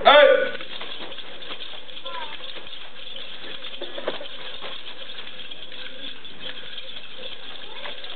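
A person's loud, short shout, about half a second long, right at the start, followed by a steady hiss with only faint, scattered light sounds.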